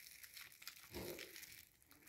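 Faint crinkling of bubble wrap and small plastic clicks as a model locomotive bogie is handled and pressed down on it.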